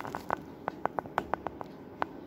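Small water plinks in a measuring cylinder as water is dripped onto a porous refractory sample to fill its pores and air gaps. About ten short pitched plinks come in a quick, irregular run in the first second and a half, then one more at the very end.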